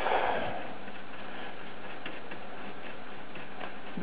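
A cloth rubbing over a printed circuit board as old flux is scrubbed off, with a brief rustle at the start, over a steady background hiss.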